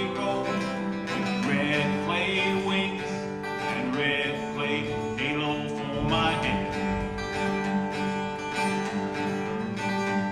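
Acoustic guitar strummed and picked through an instrumental break between verses of a country-folk song, with a wavering melody line sounding over the chords.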